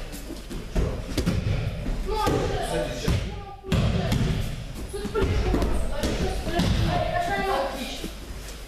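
Repeated thuds of children's bodies and hands hitting a gym mat during floor exercises and grappling, with voices.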